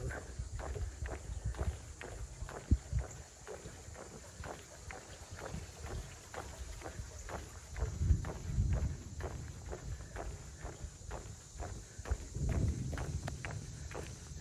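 Footsteps on a wooden boardwalk, boots knocking on the planks about twice a second. A low rumble of distant thunder swells up twice in the second half.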